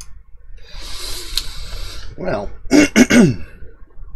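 A man breathes out long and audibly, then clears his throat in two or three short gruff bursts that drop in pitch.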